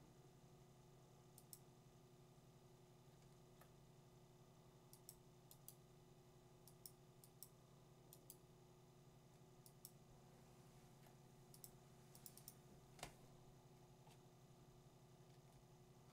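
Near silence, with faint scattered computer mouse clicks, the most distinct about 13 seconds in, over a steady low hum of room tone.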